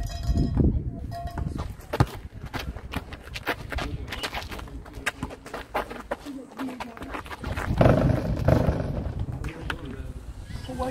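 Basketball game on an outdoor concrete court: irregular sharp knocks of the ball bouncing and of players' footsteps, with players' voices and shouts, loudest about eight seconds in.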